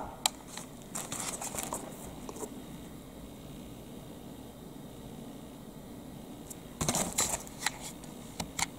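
Light handling noise from a rubber hot water bottle and its plastic packaging being touched: scattered soft rustles and clicks at first, a quiet stretch with faint room hum, then a short cluster of rustles and clicks near the end.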